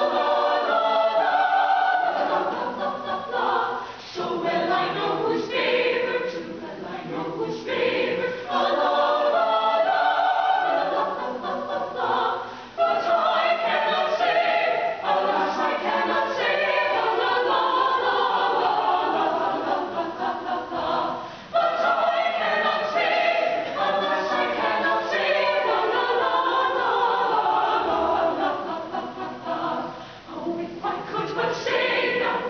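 Small mixed-voice madrigal choir singing a cappella in several parts, with brief pauses between phrases.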